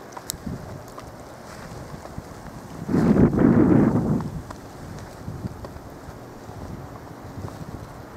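Wind buffeting the camera microphone over a low, steady outdoor rush, with one strong gust about three seconds in that lasts roughly a second.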